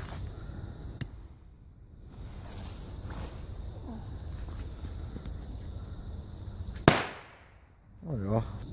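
An old German class-B firecracker (B-Böller, about a 1997 batch) going off once near the end with a single sharp bang and a short fading tail.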